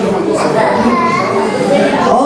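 Men's voices singing unaccompanied into microphones over a PA, with children's voices and chatter in the room underneath.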